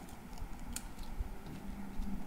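Small handling sounds of folded paper and sticky tape being pressed together: a few short clicks and crinkles, one sharper about three quarters of a second in.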